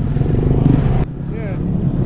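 Honda Grom's small single-cylinder engine running while the bike rides. The sound cuts off abruptly about halfway through to a quieter engine idling, with a brief voice after the cut.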